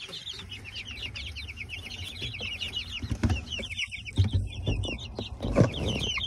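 A flock of young chickens peeping continuously: a dense stream of short, high-pitched cheeps that slide downward, overlapping several to a second. A few low thumps come in around the middle and again near the end.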